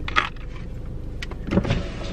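A car's electric window motor running over the low rumble of the car. There are short noisy bursts near the start and near the end, and a single click in between.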